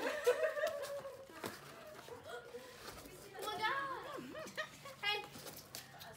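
People's voices talking and laughing, with no clear words.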